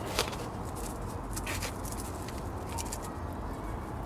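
A trowel scooping and scraping gritty potting mix in a plastic tub, with a few light clicks and scrapes, the sharpest just after the start. A steady low hum runs underneath.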